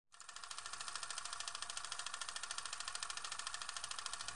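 Sound effect of a film camera running: a fast, even mechanical clicking, about a dozen clicks a second.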